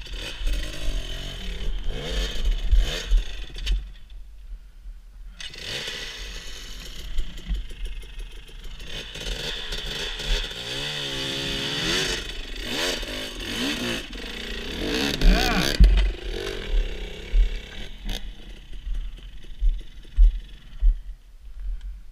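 Dirt bike engine revving in bursts, its pitch rising and falling as the bike is worked up over rocks, with clattering and scraping. The engine sound drops away for about a second and a half around four seconds in, then picks up again.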